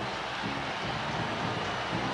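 Steady background noise of a football stadium crowd, carried on the broadcast's field sound.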